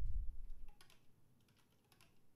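Sparse, light taps and clicks from instruments in a quiet stretch of a free-improvisation set, with a low rumble in the first half second and a few scattered soft clicks after it.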